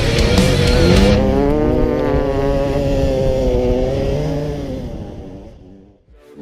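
Dirt bike engine revving, its pitch rising and falling as the throttle works, with music in the first second; the whole sound fades out near the end.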